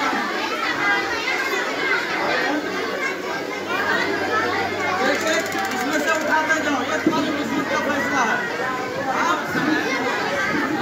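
Crowd chatter of children and men: many voices talking over one another in a steady hubbub.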